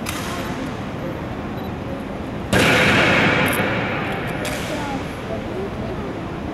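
A single sharp impact from an honor guard's rifle drill about two and a half seconds in, ringing on and fading over about two seconds in a stone hall, over a low murmur of onlookers' voices.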